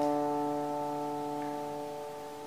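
Closing chord on acoustic guitars ringing out and slowly dying away at the end of the song.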